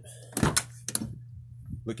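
A car's driver door being opened: the latch releases with a loud thunk about half a second in, followed by a lighter click as the door swings open.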